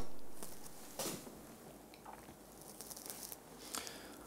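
Quiet room tone with faint rustles of clothing and hands against a clip-on shirt microphone, and a small click about a second in. The start holds the fading tail of a sharp smack heard just before.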